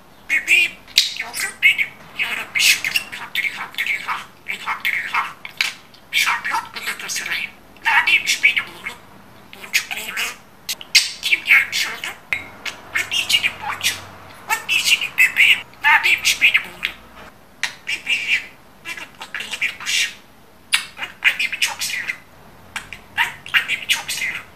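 Pet budgerigar warbling and chattering in rapid bursts, mixed with squawks and chirps, with short pauses between runs.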